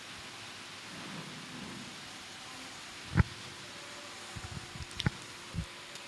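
Steady low hiss with one sharp thump about three seconds in, then a few faint knocks and clicks: a handheld microphone being picked up and handled.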